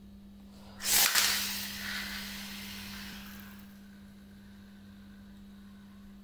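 A homemade wooden popsicle-stick Beyblade is launched from a Beyblade launcher about a second in. There is a sudden loud rip as it is released and hits the tile floor, then the whirr of the top spinning on the tiles, fading over about three seconds.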